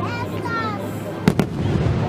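Aerial firework shells bursting: two sharp bangs in quick succession a little over a second in, the loudest sounds, with spectators' voices throughout.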